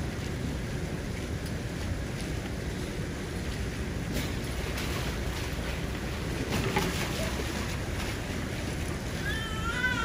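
Steady rumble of wind on the microphone over the lapping water of an outdoor sea lion pool. Near the end a child's high-pitched squealing begins.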